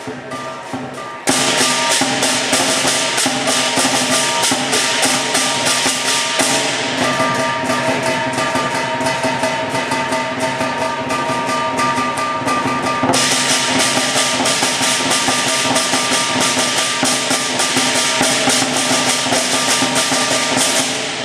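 Lion dance percussion band of drum, cymbals and gong, playing loud and fast with rapid cymbal clashes over steady gong ringing. It comes in suddenly about a second in, after a quieter stretch.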